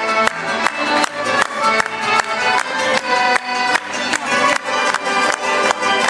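Live folk band playing an upbeat instrumental tune: violin and accordion carry the melody over strummed guitars and keyboard, with a steady, even beat.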